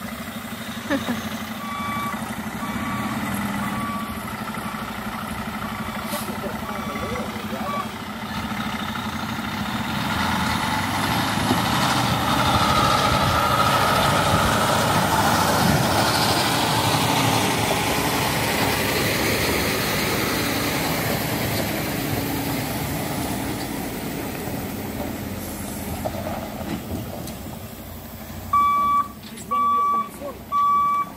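Diesel semi truck pulling a Hammar side-loader trailer: its backup beeper sounds a steady series of high beeps for the first several seconds, then the engine runs louder under load as the truck drives close past, fading again, and the beeping starts up again near the end.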